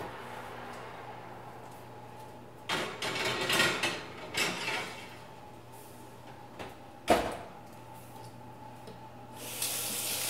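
A baking dish being slid onto the rack of a wall oven, heard as two noisy spells about three and four and a half seconds in. Then the oven door shuts with a sharp knock about seven seconds in, the loudest sound. Near the end a kitchen faucet starts running.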